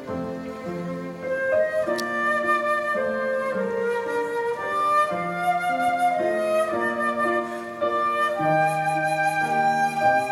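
Live chamber music: a flute plays the melody over piano and violin accompaniment, in held notes that move in steps and grow louder about one and a half seconds in.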